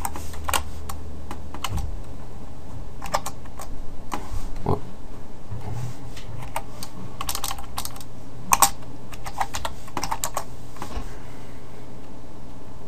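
Typing on a computer keyboard: irregular single keystrokes, then a quicker run of key clicks in the second half, over a steady low hum.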